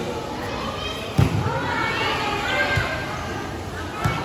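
Volleyball being struck during a rally: a sharp slap of hands on the ball a little over a second in, and a lighter hit near three seconds. Young voices call out over it in a large, echoing gym.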